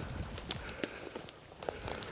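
Footsteps through dense leafy undergrowth, with a handful of short, irregular clicks and snaps as legs push through the brush.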